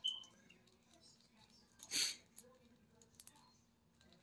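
Faint handling of a small plastic action figure: light clicks and taps as its torso and leg pieces are fitted together, with one short hiss about halfway through.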